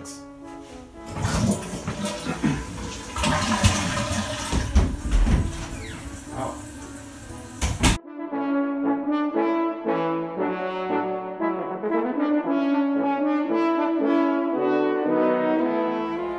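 A toilet flushing: a rushing wash of water lasting several seconds, with a short laugh near the start. It stops abruptly about halfway, and horn music takes over: a brass melody of held notes changing about twice a second.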